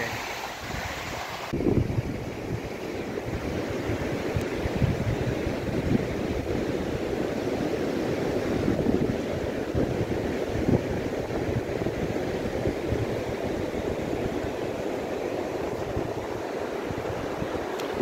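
Wind buffeting the microphone on an open beach, with ocean surf rushing steadily underneath; it grows louder about a second and a half in.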